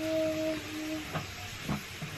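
A short steady low hum for about the first second, then a couple of soft taps as a plastic hair-dye tube and bottle are handled, over a steady background hiss.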